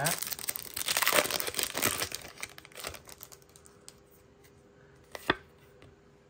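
Foil Pokémon booster-pack wrapper crinkling and tearing in the hands for about three seconds, then fading, with a single sharp click about five seconds in.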